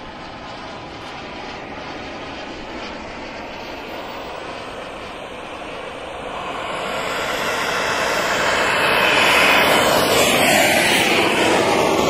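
SW190 model turbine engine of a 2.6 m L-39 RC jet in flight overhead, a steady jet whine and rush. It grows louder from about halfway and is loudest over the last few seconds.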